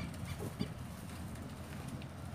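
Outdoor ambience: a steady low rumble of wind and handling on a phone microphone as it moves, with a few faint short calls in the first half-second.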